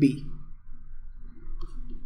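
Faint clicks and taps of a stylus on a pen tablet as a word is handwritten.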